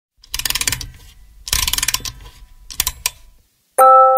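Rapid mechanical ratcheting clicks in three short runs, like a winding mechanism being turned. Near the end, after a brief silence, loud ringing bell-like notes of a glockenspiel-style melody begin.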